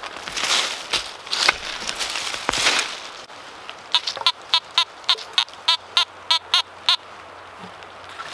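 Hand digger scraping and chopping into leafy forest soil, then a Fisher F19 metal detector giving about ten quick, evenly spaced beeps as its coil is passed over the hole: the target is still in the ground.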